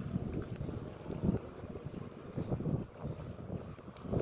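Wind buffeting the microphone: a low, uneven rumble that swells and drops in gusts.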